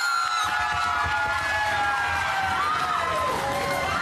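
People shrieking and laughing in excitement: long high-pitched squeals held for several seconds, their pitch slowly falling.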